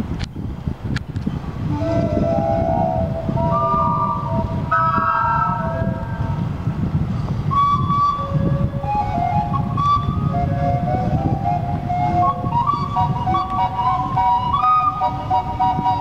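Steam calliope of the Minne-Ha-Ha paddlewheel steamboat playing a tune, starting about two seconds in. Its whistle notes step up and down in pitch, several at once, over a steady low rumble.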